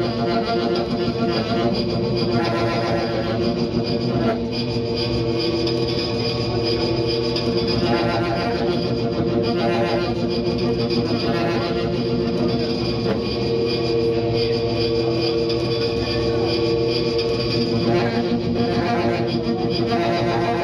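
Saxophone fed through effects pedals, building a steady, dense drone of layered held tones that shifts slowly without a break.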